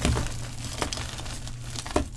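A hand crushing crumbly clumps of dried chalk powder and letting it sift onto a powder pile: soft, gritty crunching with a few sharper crackles near the start, just before a second in, and at the end.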